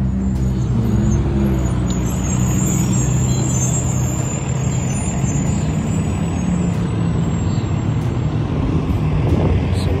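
A steady low rumble of outdoor noise, heaviest in the bass and unchanging throughout.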